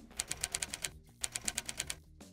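Typewriter-style key-clicking sound effect: two quick runs of crisp clicks, about a dozen a second, with a short break near the middle.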